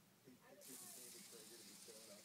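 Flip-dot bus display, its many small dots flipping in quick succession at high refresh speed. It makes a soft, dense hissing rattle that starts about half a second in.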